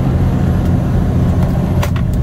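Semi-truck's diesel engine running steadily under load, heard from inside the cab as the loaded rig climbs a grade, with one light click near the end.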